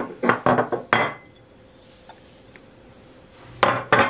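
Kitchen dishes clinking and knocking against a glass bowl: a quick run of sharp knocks in the first second, then one more near the end.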